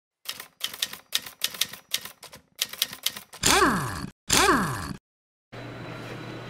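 Intro sound effect of typewriter keys clacking in several quick runs, followed by two short whooshes, each with a steeply falling tone.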